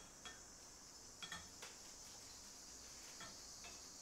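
Near silence, with a few faint light clicks and clinks from hands rummaging through a box of lab pipettes.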